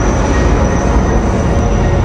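Loud, steady low rumble of a motor vehicle running close by on the street, with a faint high whine that fades near the end.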